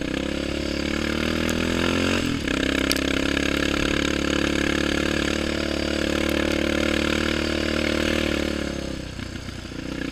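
Yamaha Raptor 700R quad's single-cylinder four-stroke engine pulling under throttle: the pitch climbs for about two seconds, dips briefly, then holds steady at speed and eases off near the end.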